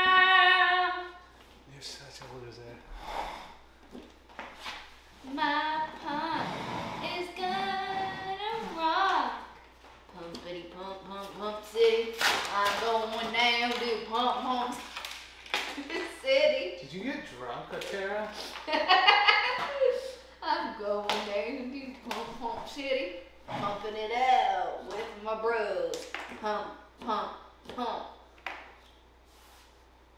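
Two people's voices talking and singing-like vocalising, indistinct, with scattered short taps and claps.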